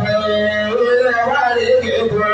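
Man singing a madh, an Islamic praise song for the Prophet, through a microphone and loudspeaker, holding long wavering, ornamented notes over a low steady note.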